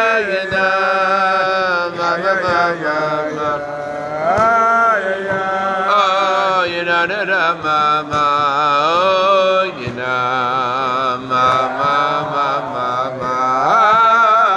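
A man's voice singing a wordless Chassidic niggun on nonsense syllables, in long drawn-out notes that slide up and down in pitch.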